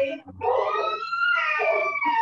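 A person's voice in one long drawn-out vocal sound, its pitch rising and then easing down, over a faint steady low hum.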